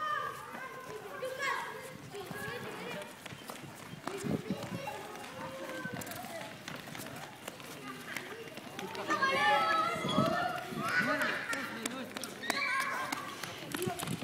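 Children and adults talking and calling out in the background, playground chatter that grows louder about nine seconds in, with a few light knocks.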